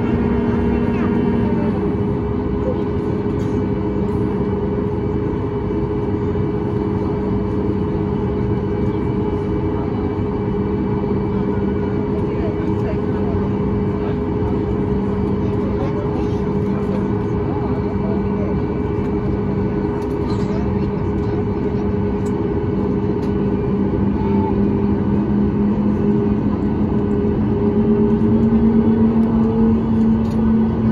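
Cabin noise of a Boeing 737 MAX 8 taxiing: a steady drone from its CFM LEAP-1B engines at idle and the cabin air, with a low hum that drops slightly about a second and a half in and rises again near the end.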